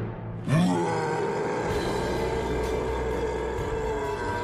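A low, growl-like creature call rising in pitch about half a second in, merging into sustained film-score music.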